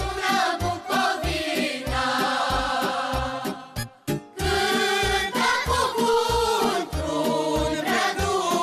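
Children's choir singing a Romanian folk song over an instrumental accompaniment with a steady bass beat. The music breaks off briefly about halfway and then starts again.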